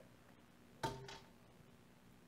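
Near silence with a single short knock about a second in that dies away quickly.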